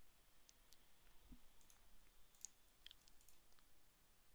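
Near silence with several faint computer mouse clicks.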